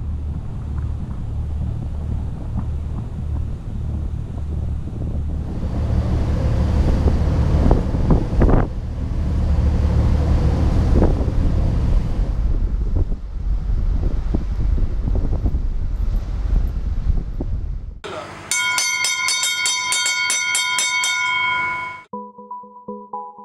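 Wind buffeting the microphone aboard a motor boat under way at sea, over a steady low rumble and the wash of water. About eighteen seconds in it gives way to electronic synth music with a regular beat.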